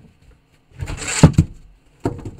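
A backdrop knocked over by a shoved case, sliding down behind a table: a rustling scrape lasting under a second, ending in two heavy thuds.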